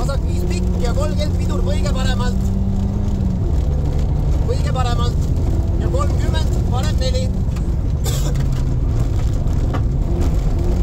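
Rally car's engine running hard, heard from inside the cabin, over the rumble of tyres on a gravel road; the engine pitch drops about three seconds in and climbs again near the end. A voice, the co-driver reading pace notes, comes in short bursts over it.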